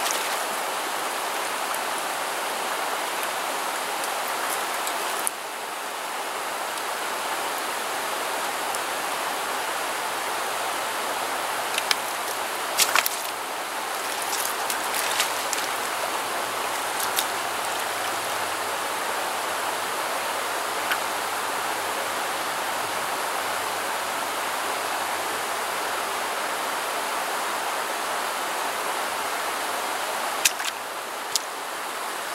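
Steady rush of flowing creek water, with a few short sharp clicks near the middle.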